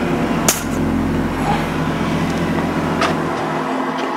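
A motor vehicle engine running close by, a loud steady rumble with a low hum, with two sharp clicks about half a second in and about three seconds in.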